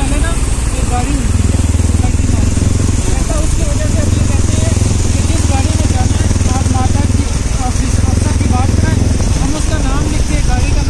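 Small motorcycle engine running at low road speed, with a heavy low rumble of wind on the microphone that holds until near the end.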